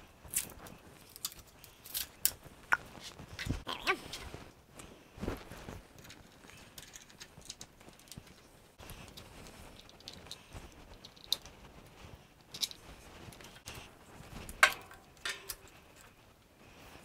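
Irregular clicks, taps and short scrapes of plastic and metal string-trimmer parts being handled and twisted against each other, as a straight shaft and its coupler are fitted together. The loudest is a sharp click near the end.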